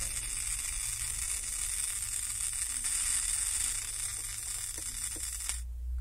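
A steady high hiss that starts abruptly and cuts off suddenly about five and a half seconds in, over a low hum.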